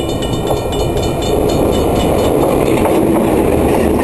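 Diesel shunting locomotive and its train of flat wagons rumbling past close by, wheels clattering on the rails, the rumble growing louder about a second and a half in. A level-crossing bell rings rapidly at first and fades out.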